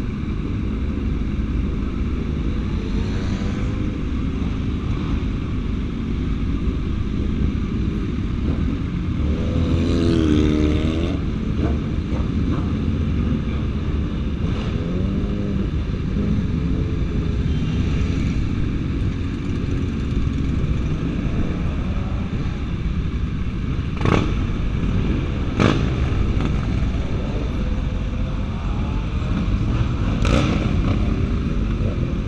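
A group of sport motorcycles running at low speed, with one engine revving up and down about ten seconds in. Two sharp pops come near the end.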